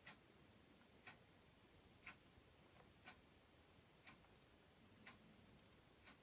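A clock ticking faintly, one tick each second, in an otherwise near-silent room.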